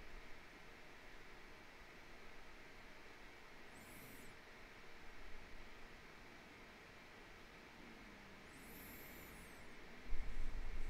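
Near silence: room tone with a steady faint hiss. Two faint high-pitched chirps break it, a short one about four seconds in and a longer one near the end.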